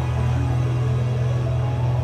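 Steady low synthesizer drone with faint, shifting held tones above it.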